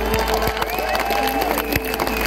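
Live band and choir ending a song on a held chord that fades about a second and a half in, with scattered audience clapping and cheering.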